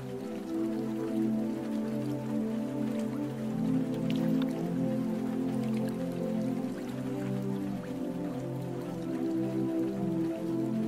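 Calm, slow ambient music with long held chords that shift gently, layered over steady rain with individual raindrops pattering into water.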